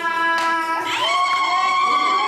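Women's voices: a held sung note, then about a second in a shrill, very high celebratory cry that rises sharply and holds steady.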